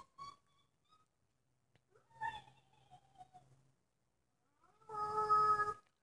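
Cartoon creature vocal sounds coming from a TV playing an animated LEGO video. First come a few short faint chirps, then a wavering call, then a louder steady squeal lasting about a second near the end.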